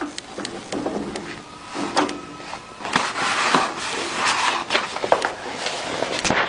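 Plastic lamination film rustling and crinkling as it is pulled by hand over the metal guide rod of a cold laminator, with irregular light knocks and clicks from the handling.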